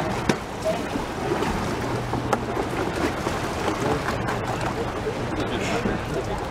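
Open-air noise on a small boat at sea: steady wind and water noise with scattered background voices. A low steady hum runs for about a second and a half starting near the second-and-a-half mark, and there are two sharp knocks.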